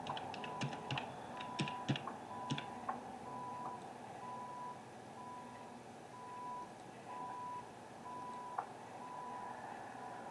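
Telehandler's reversing alarm beeping steadily, about one beep a second, as the machine backs up. A scatter of sharp clicks and knocks comes in the first few seconds, with one more near the end.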